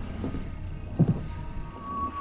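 Horror film soundtrack: a low rumbling drone with one dull thud about a second in and a faint thin high tone coming in near the end.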